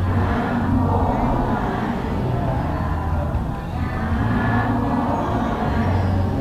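Many voices chanting together in a steady low drone, in phrases of about a second each.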